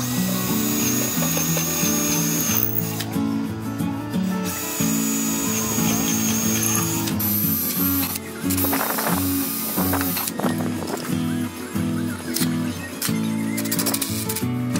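Background music with a steady beat over a cordless drill running in three bursts of about two seconds each, drilling into the wooden supports of the stand.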